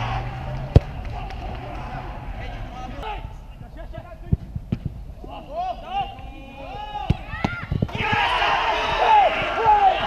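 A football kicked hard once about a second in, a goal kick by the goalkeeper, followed by a few fainter kicks of the ball and players shouting to one another across the pitch, the shouting busier near the end.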